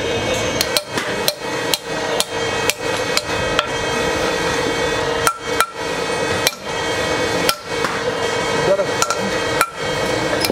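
Hand hammer striking metal during cylinder-head repair: about a dozen sharp blows at an irregular pace, with a short lull in the middle, over a steady background hum.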